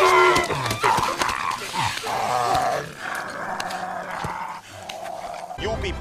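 Film fight-scene audio: a German shepherd growling and snarling during a struggle, with a man shouting and scattered sharp thumps.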